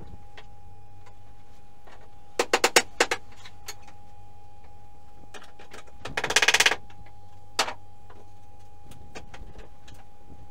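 Sharp knocks of a steel crowbar on wooden subfloor boards being pried up: a quick run of five or six blows about two and a half seconds in, then a rapid clattering rattle around six seconds in and one more knock a second later.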